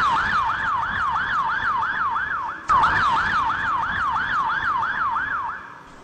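Emergency siren sound effect, a fast yelp sweeping up and down about four times a second. It breaks off and starts again abruptly about two and a half seconds in, then fades out shortly before the end.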